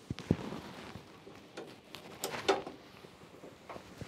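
A few faint clicks and knocks with light rustling, from hands working metal parts at the sieve area of a combine harvester. The sharpest click comes just after the start.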